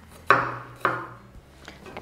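Chef's knife chopping red bell pepper on a wooden cutting board: two firm strokes about half a second apart, then a few light taps near the end.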